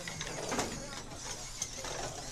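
Small competition robots' drive motors and mechanisms clicking and rattling on the field, with a louder knock about half a second in, over a murmur of voices.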